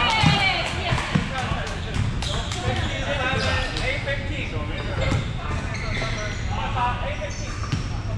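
Volleyball thumping off hands and bouncing on a hardwood gym floor, a few sharp knocks in a large hall, among players' voices.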